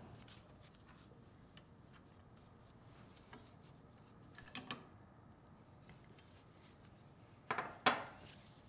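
A few faint metal clinks and taps as a pilot's steel mounting bracket and bonnet bolts are fitted onto a control valve's bonnet, the loudest about halfway through and a short cluster near the end.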